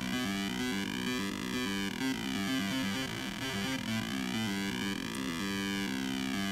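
A chippy square-wave melody from a 555 timer circuit played through a small speaker: a quick run of stepped notes, pitched by 8-bit numbers sent to a DAC. The tone sweeps slowly up and down, twice, as a second DAC's control voltage swings the pulse width like a low-frequency oscillator.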